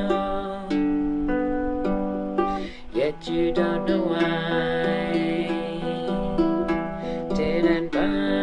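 Baritone ukulele played under long, wordless sung notes from a woman's voice, with a brief break about three seconds in.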